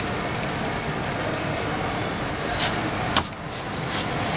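Steady background noise with one sharp click about three seconds in.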